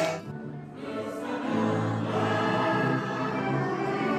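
A group singing in chorus with musical accompaniment. The sound dips briefly just after the start and fills out again from about a second in.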